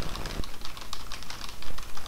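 Computer keyboard being typed on fast: a rapid, continuous run of keystroke clicks, many keys a second.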